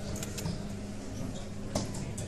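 Steel-tip darts landing in a bristle dartboard: a few short, sharp knocks, the clearest near the end, over a steady low hum.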